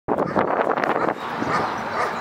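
Two dogs play-fighting, with growls and yips in a dense run for about the first second, then quieter.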